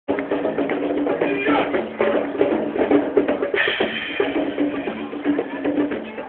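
Live hand drums playing a fast, driving rhythm over a steady held low note, with some crowd voices.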